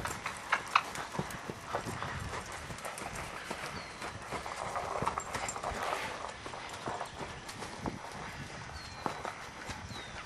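Hoofbeats of a Percheron–Appaloosa cross mare cantering on a sand arena: a run of soft, uneven knocks.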